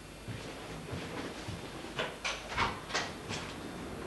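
A run of sharp clicks and knocks, about five in a second and a half, over a low rumbling room background.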